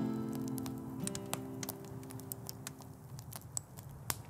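The last acoustic guitar chord rings on and fades away over about three seconds. Scattered pops and crackles from a campfire come through it.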